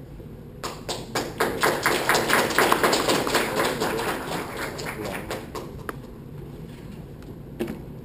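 Audience clapping, starting about half a second in, loudest in the middle and dying away after about five seconds, with a few stray claps afterwards.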